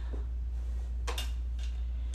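Steady low hum with two brief rustles about a second apart, typical of a T-shirt being handled.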